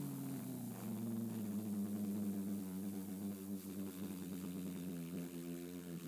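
A person humming one long, low, steady drone through closed lips, imitating an aircraft engine while flying a toy jet.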